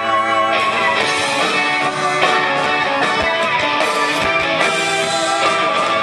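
Live rock band playing, with strummed electric guitars. The band's sound fills out and grows brighter about half a second in, then carries on loud and dense.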